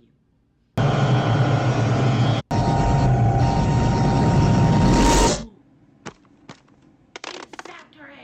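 Science-fiction sound effect of a crackling, buzzing bolt of electric energy from an alien probe: loud for about four and a half seconds, breaking off for an instant partway through, then cutting off suddenly. A few sharp clicks follow near the end.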